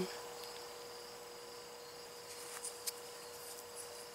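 Quiet evening background of crickets chirring steadily and high-pitched, with a faint steady hum beneath, and two faint clicks about three seconds in.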